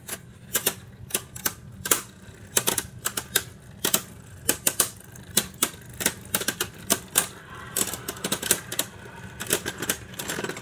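Two spinning Beyblade Burst tops, Caynox and Cognite, clashing over and over in a plastic stadium: rapid, irregular clacks, several a second. About three-quarters of the way in, a continuous rattle joins in under the clacks as the tops stay pressed together.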